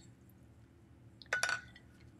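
A paintbrush being rinsed in a water jar: mostly quiet, then a quick cluster of taps and a short clink against the container about one and a half seconds in.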